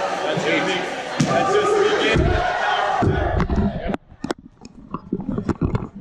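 A group of young players' voices shouting together, which stops abruptly about four seconds in. Scattered sharp knocks and taps follow.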